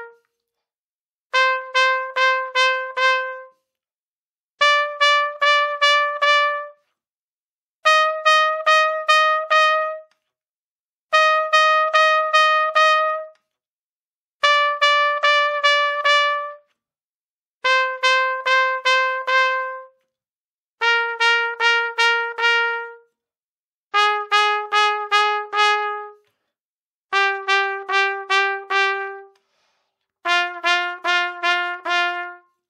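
Trumpet double-tonguing a slow, even exercise, with 'tu' and 'ku' strokes alternating on repeated notes. It comes in two-second bursts of about six articulated notes on one pitch, with a short rest between bursts. The pitch steps up over the first few bursts and then back down.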